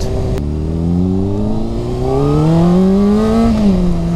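Honda CBR600RR inline-four engine, restricted to 48 PS, heard from the rider's seat while the bike is ridden. A click comes about half a second in, then the engine pulls with a steadily rising pitch for about three seconds. Near the end it eases back and settles to a steady cruising note.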